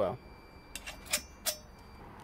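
A few faint, short clicks spaced irregularly over a low steady hum.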